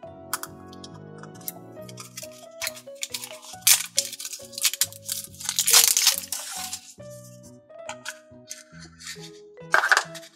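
Background music with a steady melody, over the crinkling and tearing of plastic shrink-wrap being peeled off a plastic toy capsule. The crinkling comes in bursts, loudest about four to six seconds in, with a few sharp plastic clicks.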